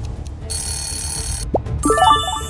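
Background music with a high, bell-like ringing sound effect that starts about half a second in and lasts about a second, then a short rising glide near the end.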